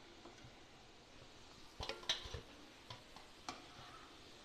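A slotted metal spoon knocking lightly against a frying pan a few times while fried baatis are lifted out of the oil, the loudest knock about two seconds in, over a faint sizzle of the hot oil.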